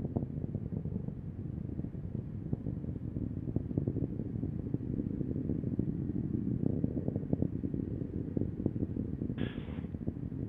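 Low, steady rocket rumble full of crackles from the Falcon 9 first stage's nine Merlin engines firing during ascent.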